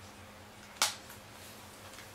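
A single short, sharp click a little under a second in, over quiet room tone with a faint steady hum.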